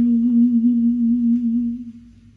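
A singer's long held note with a slight vibrato, part of a song played back over hi-fi loudspeakers. It fades away near the end.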